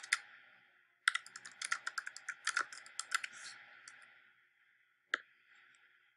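Typing on a computer keyboard: a short burst of keystrokes, a brief pause, then a quick run of keystrokes for about three seconds. A single click comes near the end.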